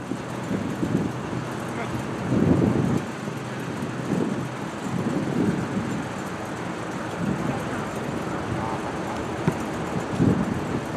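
Outdoor noise of wind buffeting the microphone, with faint, indistinct voices in the background. A stronger gust comes about two and a half seconds in.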